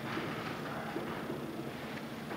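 Steady classroom room noise, an even hum with faint scattered rustles and small movements.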